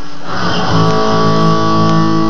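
Fender HM Strat electric guitar played through a SansAmp GT-2 amp-simulator pedal: a chord is struck a little over half a second in and held ringing.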